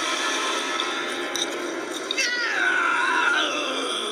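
A cartoon voice laughing, then a long high-pitched, cat-like wail that slides down in pitch through the second half.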